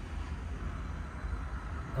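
Steady low background rumble with a faint even hiss.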